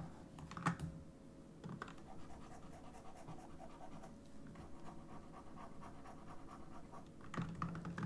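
Faint clicks and light scratching of a stylus working on a drawing tablet, over a steady faint hum.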